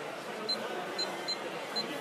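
Four short, high electronic beeps about half a second apart: the key beeps of a Futaba 4PX radio-control transmitter as its buttons are pressed.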